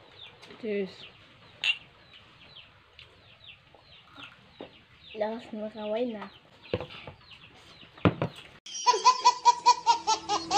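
A quiet stretch with faint high chirping and a short voice sound a little past the middle. Near the end a baby's laughter cuts in, a quick run of repeated high giggles.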